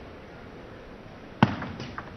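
Quiet hall hush, then about a second and a half in a sharp click of a table tennis ball struck by the racket on a serve, followed quickly by a few lighter ticks of the ball bouncing on the table and being returned.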